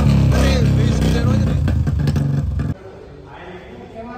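Royal Enfield Bullet's single-cylinder engine running loudly with a fast, even exhaust beat, just after being kick-started. The sound cuts off suddenly a little over halfway through.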